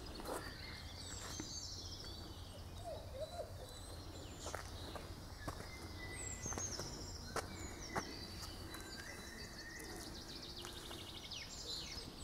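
Several songbirds singing in woodland, many short chirps and trills overlapping, over a faint steady low rumble, with a few sharp clicks scattered through.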